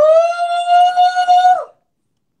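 A man's high falsetto 'hoo' call, held for about a second and a half: it slides up at the start, stays on one pitch with a wavering loudness, and drops away at the end.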